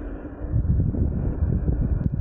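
Wind buffeting the microphone of a rider moving along on an electric unicycle: a loud, gusty low rumble with no voice, easing for a moment near the start and then picking up again.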